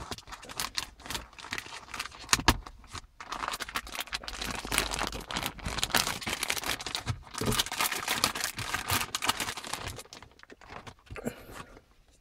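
Clear plastic retail packaging bag crinkling and rustling as it is pulled open by hand, with irregular sharp crackles, dying down about ten seconds in.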